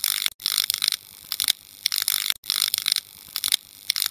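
Logo sting sound effect: rapid mechanical ratcheting clicks, coming in bursts about once a second with short gaps between.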